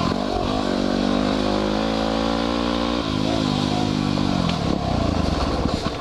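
2010 Yamaha WR250R's single-cylinder four-stroke engine pulling under throttle on a dirt trail. Its pitch dips suddenly about halfway through, climbs again, then drops as the throttle eases near the end. Wind rushes over the helmet-mounted microphone throughout.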